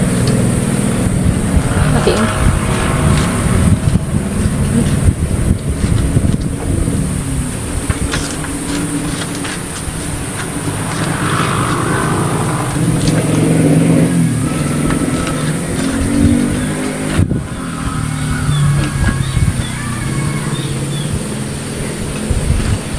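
A motor engine running steadily in the background, its low hum shifting slightly in pitch and level, with a constant high hiss above it.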